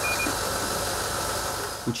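Diesel engine of a fire-rescue aerial-platform truck running steadily while its raised boom holds the basket at the window, with a brief high double beep right at the start.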